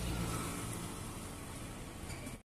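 An auto-rickshaw's small engine passing close by, loudest at first and then slowly fading as it moves away, over street noise.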